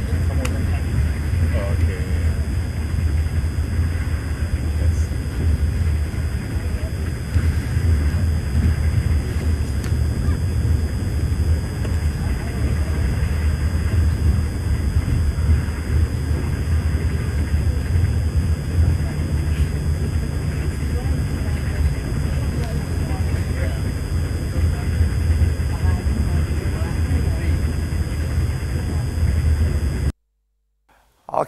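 Passenger train running, heard from inside the carriage as a steady low rumble through a phone's microphone.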